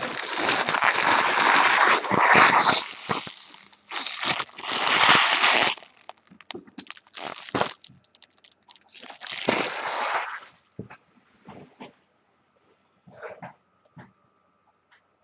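Foil trading-card pack wrappers from 2014 Bowman Draft Picks packs being handled and crumpled, in three main bursts of crinkling with small ticks and rustles between them.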